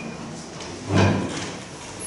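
A single short wooden thump and scrape about a second in, typical of a piano bench being shifted on the stage floor as the pianists settle into place.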